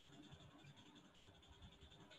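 Near silence: faint background hiss of an online-meeting audio feed.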